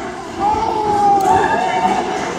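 A person's voice calling out one long drawn-out shout, starting about half a second in and held for about a second and a half, over the murmur of a crowd in a hall.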